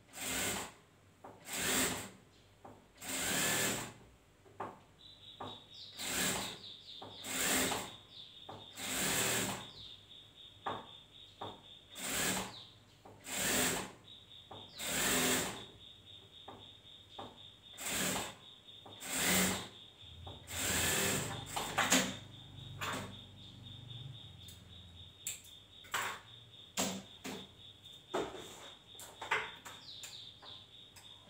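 Industrial sewing machine stitching in short runs, each about a second long, starting again roughly every one and a half seconds. Near the end the runs give way to lighter, scattered clicks.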